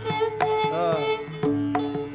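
Carnatic concert music in raga Bhairavi: a melodic line with sliding ornaments over a steady tambura drone, marked by regular mridangam strokes.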